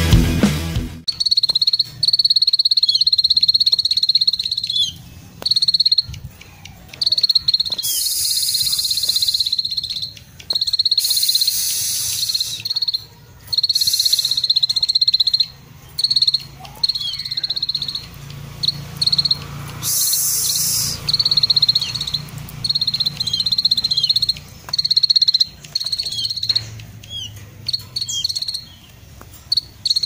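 Caged plain prinia (ciblek sawah) singing long, high, insect-like trills (ngetir) in stretches of several seconds with short breaks.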